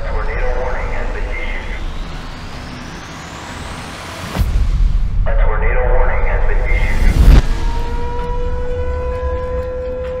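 Trailer sound design: a high sweep rising over the first few seconds, deep booming hits about four and seven seconds in, then a single siren tone that slowly rises in pitch from about seven and a half seconds, an outdoor tornado warning siren winding up.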